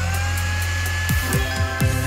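Electric blender running, a steady motor hum with a high whine that rises as it comes up to speed at the start. Several quick downward-swooping sounds come in the second half.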